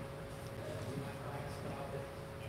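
Quiet room tone: a steady faint hum with a faint murmur of voices.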